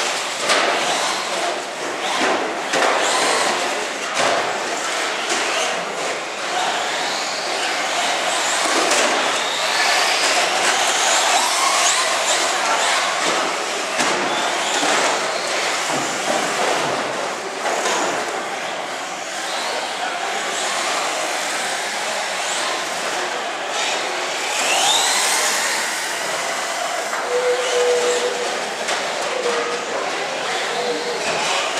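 Electric radio-controlled cars, including a Traxxas Slash 4x4 short-course truck, being driven around a track. Their motors whine, rising and falling in pitch as they accelerate and slow.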